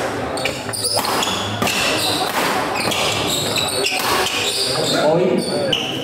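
Badminton doubles rally: rackets strike a shuttlecock several times, each hit sharp and echoing in a large hall, with voices and players' calls around it.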